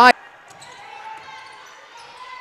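Faint ambience of a basketball game in progress in a gym: low crowd murmur with a few thin squeaks and light ticks from the court.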